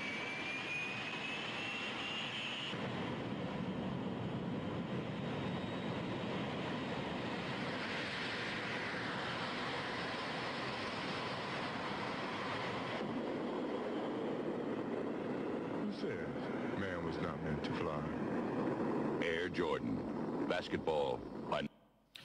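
Jet airliner engine sound on the soundtrack of a 1980s Nike Air Jordan TV commercial, played back: a thin whine rising in pitch for the first couple of seconds, then a steady jet engine running. It swells for a few seconds around the middle.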